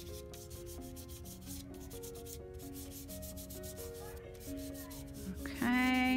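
Fingers and hand rubbing chalk pastel into paper, blending it in with a steady scratchy rubbing. Soft background music with held notes plays underneath.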